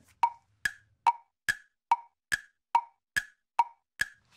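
A ticking 'thinking time' timer sound effect: short, wood-block-like ticks at an even pace of about two and a half a second, counting down the time to guess the answer.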